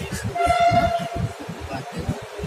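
A train horn sounds one steady blast of just under a second, starting about a third of a second in, heard from aboard a slowly rolling passenger train. The low rumble of the moving train runs beneath it.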